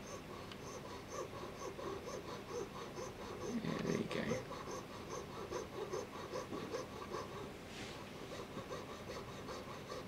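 Jeweller's piercing saw cutting through a metal ring shank, with a steady rhythm of fine rasping strokes about two to three a second. A breath-like sound comes about four seconds in.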